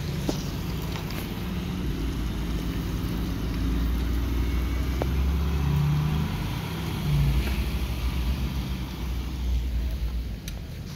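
Steady low rumble of idling emergency-vehicle engines, growing a little louder around the middle.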